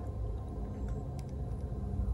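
Quiet room tone: a low steady hum with one or two faint ticks.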